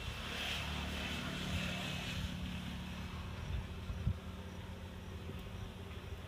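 A low, steady engine hum, strongest for the first two seconds and then fading, over faint outdoor background noise.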